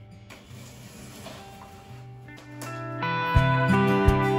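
Background music: a quiet, sustained passage that, about three seconds in, grows louder and fuller with a steady beat.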